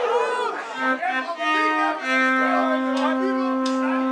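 A live band's opening: two short held instrument notes, then one long steady note from about two seconds in.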